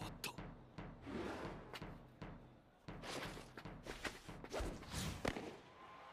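Cheering-section drums beating in the stands in a cartoon soundtrack, a run of thumps at uneven spacing. The change in their rhythm is a coded signal to the fielders.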